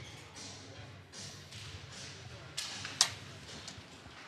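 Ice hockey rink sounds: skates scraping the ice in short swishes, with a smaller knock and then a sharp crack about three seconds in, the loudest sound.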